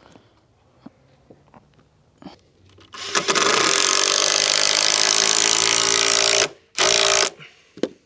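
Cordless drill driving a screw into a wooden board: after a few faint clicks, the motor whines steadily for about three and a half seconds, stops, then gives one short second burst.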